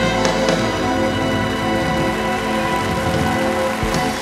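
Live stage band holding the long final chord of a song, with a couple of sharp percussion strikes just after it begins and a last strike near the end, after which the chord dies away.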